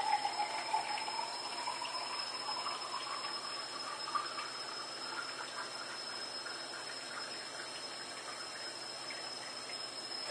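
Thin stream of filtered water falling from a homemade activated-carbon bottle filter into a drinking glass, with a faint tone that rises slowly in pitch over the first four seconds as the glass fills.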